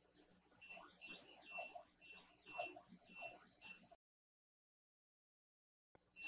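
Near silence, with a faint run of short, high, same-pitched whines about twice a second from a 3018 CNC router's stepper motor jogging the Z axis down in small steps. The sound cuts out completely about two-thirds of the way through.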